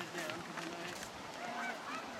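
Several short, pitched bird calls.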